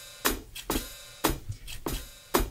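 Hi-hat sound of a Roland TD-1KPX2 electronic drum kit, struck about five times a little over half a second apart, each hit ringing briefly while the hi-hat pedal is worked to open and close it.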